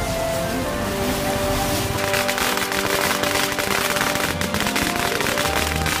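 A long string of Chinese firecrackers (biānpào) going off about two seconds in: a rapid, continuous chain of sharp cracks that keeps going. Background music plays throughout.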